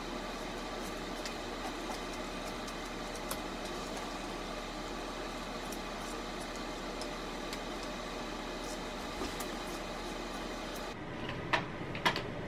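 Steady room hum with a low mains-like tone, and a few faint snips of scissors cutting through the jersey-knit straps of a sports bra.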